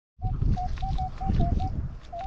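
Metal detector giving a choppy string of short mid-pitched beeps as its small coil sweeps over a buried target, one that reads 30 on the detector, over low rumbling noise.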